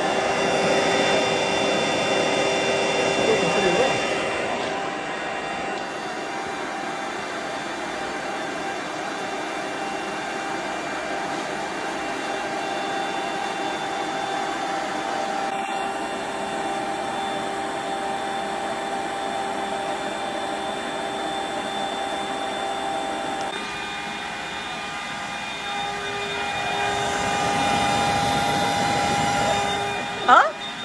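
Built-in electric pump of a Bestway queen-size air mattress running steadily as it inflates the mattress, a loud whirring hum with a constant pitch. It dips a little after about five seconds and swells again near the end.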